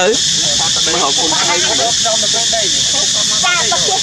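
Loud, steady high-pitched hiss throughout, with people talking in the background.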